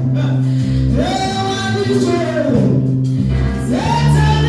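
Gospel song with voices singing together over sustained bass notes; a voice slides up into a high held note about a second in and again near the end.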